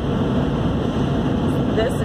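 Steady cabin noise of a 2015 Sprinter van driving at road speed: its four-cylinder diesel engine running under the rumble of tyres on the road.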